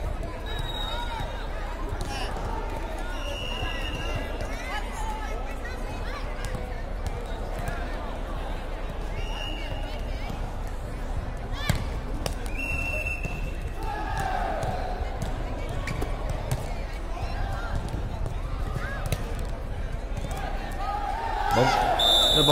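Air volleyball rally on an indoor court: sneakers squeak on the floor, players call out, and a hand hits the light plastic ball with one sharp slap about halfway through. The hall's echo is heard throughout.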